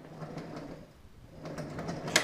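Wheels of a folding hand cart carrying a battery backpack sprayer rolling over a concrete floor: a low rumble in two stretches with a short lull between, and a few light clicks near the end.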